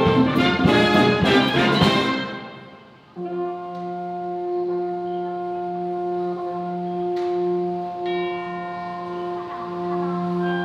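Concert wind band playing. A loud full-band passage with percussion strikes ends about two seconds in and dies away. About three seconds in, a new soft section opens on sustained brass chords, with a melody stepping above them from about eight seconds.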